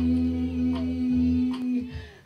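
A woman singing solo, holding one long, steady note that breaks off near the end.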